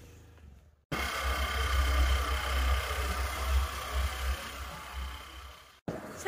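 Wind buffeting the microphone on a moving scooter, a heavy fluctuating rumble with a steady hum of several tones over it. It starts abruptly about a second in and cuts off just before the end.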